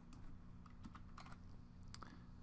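Faint computer keyboard typing: a handful of separate key clicks, entering a parameter value.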